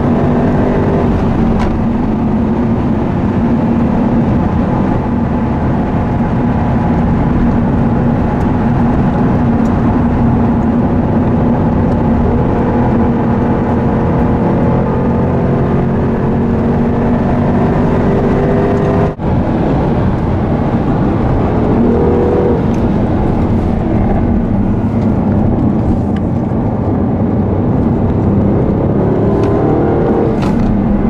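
2014 Jaguar XKR's supercharged 5.0-litre V8 driven hard around a race track, heard from inside the cabin with road and tyre noise. The engine note rises and falls with acceleration and braking. There is a brief drop-out in the sound about two-thirds of the way through.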